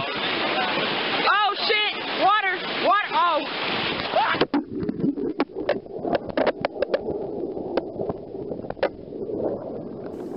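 Rushing whitewater with people yelling over it; about four and a half seconds in, the sound cuts abruptly to a muffled underwater wash with scattered knocks and clicks as the camera goes under the river.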